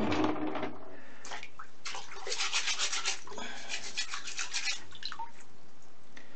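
A small brush scrubbing a wet quartz crystal specimen in quick back-and-forth strokes, mostly from about one and a half to five seconds in, working off the iron-oxide coating left after an oxalic acid soak.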